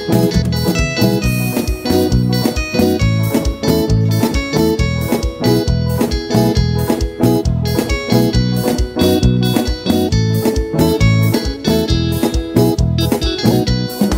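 Live band playing an instrumental passage of lambadinha, a lambadão dance rhythm: electric guitar and keyboard over bass and a fast, steady beat.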